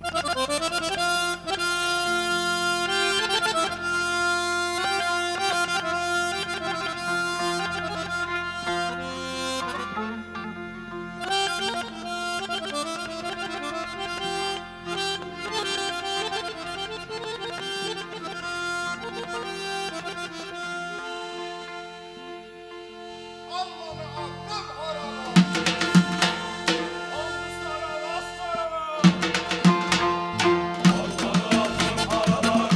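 Accordion playing a sustained, flowing melody as the introduction to a Turkish folk song (türkü). In the last few seconds other instruments come in with sharp percussion hits.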